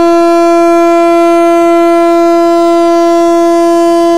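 WAP-7 electric locomotive's horn sounding one long, steady, single-pitched blast, the warning given as the train prepares to depart.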